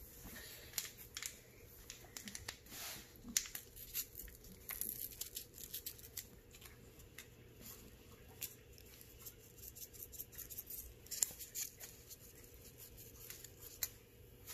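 A foil seasoning packet being opened and handled, faint crinkling and rustling with a scatter of small ticks throughout.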